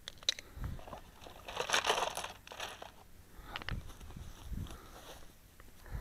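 Quiet handling noise close to the microphone: rustling and crunching, a few soft thumps and light clicks, with no shots fired.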